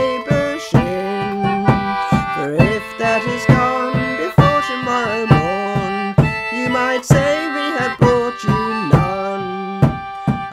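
Concertina playing a chordal accompaniment with a steady pulse, its held reed chords changing every beat or so, with a woman's voice singing a folk melody over it.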